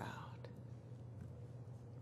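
A pause in a woman's amplified speech: quiet room tone over a lectern microphone with a steady low hum, her last word fading at the start and a faint click about half a second in.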